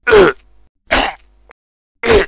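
A person's voice giving short, loud pained cries, two about a second apart, for a sponge puppet being stabbed with a knife.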